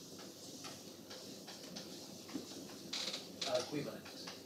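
Chalk writing on a blackboard: scratching, tapping strokes, with a louder run of strokes near the end.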